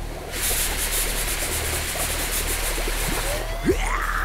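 Steady hiss of gas venting from a sealed plastic bottle of dry ice and hot water, a dry-ice bomb building pressure, over a low drone. Near the end comes a short sharp sound and a rising sweep.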